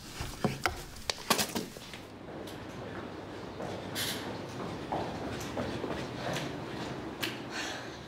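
A door latch and handle clicking as a door is unlocked and opened in the first couple of seconds. Then a steady low background hiss with a few soft, scattered knocks as someone walks with a forearm crutch.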